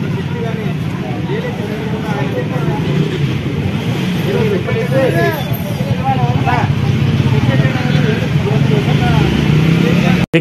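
Steady low hum of a vehicle engine running, with people's voices talking over it, growing a little louder in the second half.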